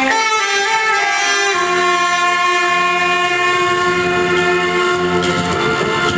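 Saxophones playing long held notes together over a backing track, whose lower accompaniment pattern comes in about a second and a half in.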